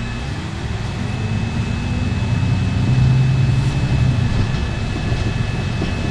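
City bus engine pulling away and accelerating, heard from inside the passenger cabin. The engine note rises over the first three seconds and then settles, with a thin steady high whine beneath it.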